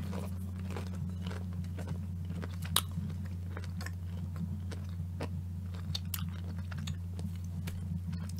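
A person chewing a battered, deep-fried dill pickle: scattered soft crunches, one sharper crunch about three seconds in. A steady low hum runs underneath.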